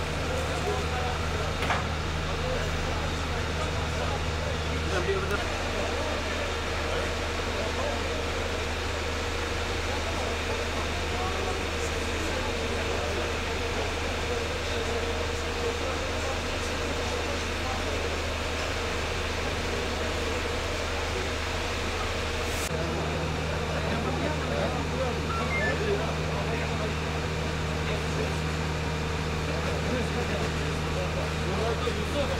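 A vehicle engine idling steadily: a constant low drone. One part of the hum drops away about five seconds in and comes back a little past twenty seconds.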